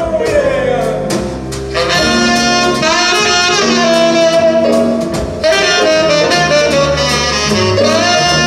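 Live jazz orchestra playing an instrumental passage, with the saxophone section prominent over a drum kit.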